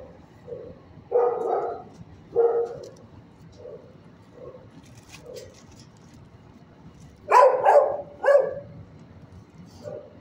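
A dog barking: two barks just over a second in, then a quick run of two or three barks near the end, with fainter barks roughly once a second in between.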